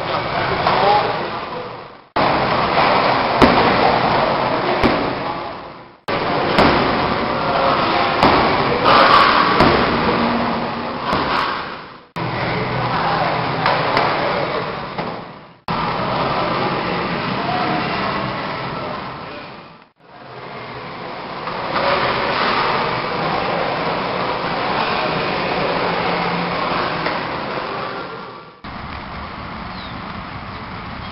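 Outdoor voices and background noise of a group training session, in several short clips cut together so that the sound stops and restarts abruptly, with a laugh near the start.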